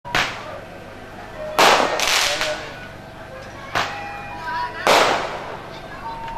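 Firecrackers going off: about five sharp bangs at irregular intervals, each with a short fading echo, two of them close together near the two-second mark.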